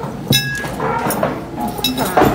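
A single sharp clink of tableware about a third of a second in, ringing briefly at a few clear pitches, over background chatter.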